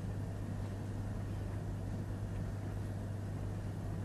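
Steady low electrical hum with faint hiss from the recording: room tone with no distinct events.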